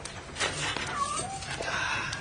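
A cat meowing: a few short yowls that glide up and down in pitch, after a sharp knock about half a second in.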